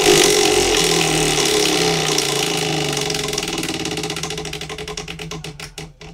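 Hand-spun prize wheel, its metal rim pegs ticking past the pointer: a fast rattle of clicks from the moment of the spin that gradually slows into separate, spaced ticks as the wheel loses speed.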